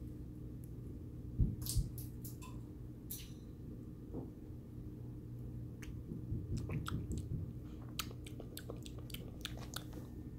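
Small blue parrotlet nibbling cooked corn kernels off a fork, its beak making faint sharp clicks and small crunches. There are two louder clicks about a second and a half in, and a run of quick clicks in the second half.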